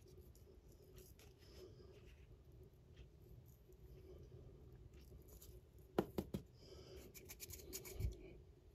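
Faint scratching and rustling of a glue-coated miniature base pressed and rubbed through loose flock on paper. There are three quick taps about six seconds in, and the scratching thickens near the end.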